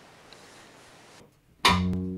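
Faint room tone, then, just over one and a half seconds in, a piano, double bass and drum kit trio comes in loudly together on a sustained chord.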